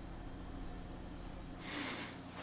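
Faint, thin music leaking from an in-ear Bluetooth earbud close to the microphone, barely above room hum. There is a short breath near the end.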